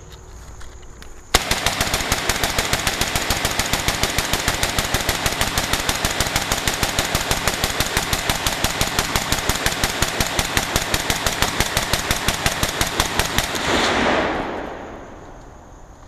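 AK-47 rifle with a drum magazine firing a long, rapid, continuous string of shots, several a second, starting about a second and a half in and stopping about fourteen seconds in. The shots are followed by a trailing echo that fades away.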